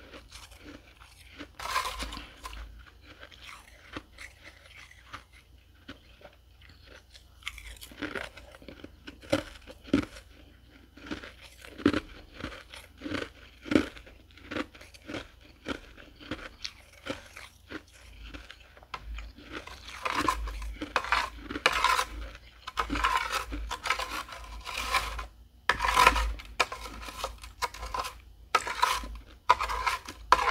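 Close-up chewing of dry, flaky freezer frost: crisp crunches, sparse and quieter at first, then louder and denser through the second half.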